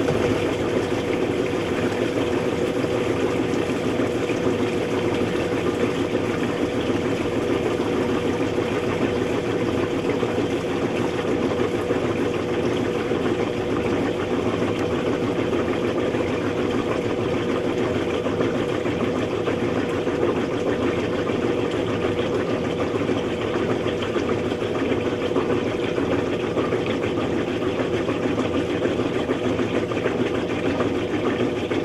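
Maytag MVWP575GW commercial top-load washer spinning at speed in its drain-and-spin cycle, an even motor-and-tub hum with a steady whir. The load is a heavy hardback phone book, a deliberately unbalanced load, yet the spin runs steadily without knocking or banging.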